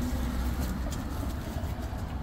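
Street traffic noise: a steady low rumble of passing cars.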